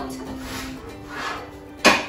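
Background music with steady sustained notes, then a single sharp clack from the oven near the end as it is opened and a baking tray is drawn out.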